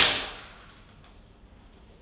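A single loud, sharp bang right at the start, dying away over about half a second.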